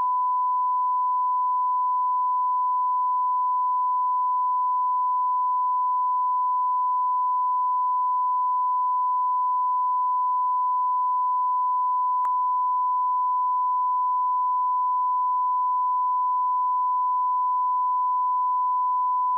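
Steady 1 kHz line-up test tone on a broadcast feed, sent with the station slate while the feed is idle. One faint click comes about twelve seconds in.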